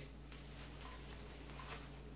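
Quiet room with a steady low hum and faint sounds of a person chewing a mouthful of cheese bread.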